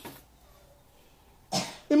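A single short cough about one and a half seconds in, after a near-silent pause.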